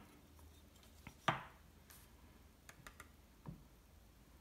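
A few light clicks and knocks of small objects being handled, with one sharper tap about a second in and a cluster of fainter ticks near the end.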